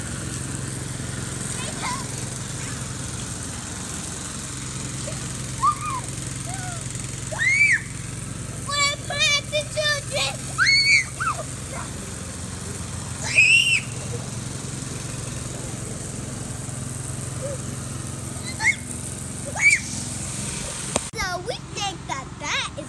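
Children shrieking and calling out several times, with high rising-and-falling squeals, over a steady low outdoor hum.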